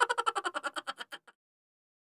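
The tail of an intro jingle: a fast stuttering echo of short pulses, about a dozen a second, dying away about a second and a quarter in.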